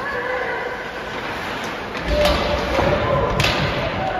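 Ice hockey play heard in an indoor rink: voices shouting over the game, a thump about two seconds in, and a sharp crack a little before the end.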